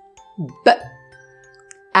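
A woman saying the isolated phonic sound /b/, one short clipped 'b' about half a second in, over soft background music of steady held tones.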